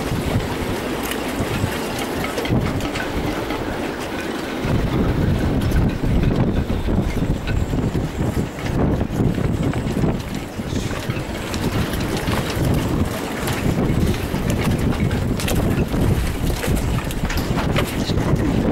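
Strong wind buffeting the microphone in gusts, heavier from about four seconds in, over choppy water around moored boats.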